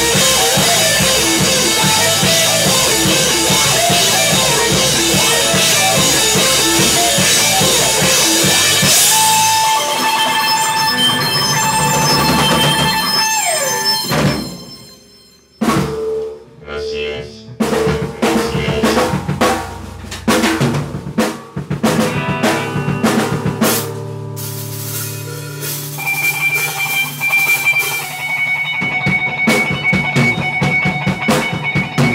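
Live rock band with drum kit, electric bass and electric guitar playing loudly. About halfway a long held high note slides down and the band breaks off almost to silence, then comes back with sparse hits and held chords that build up again.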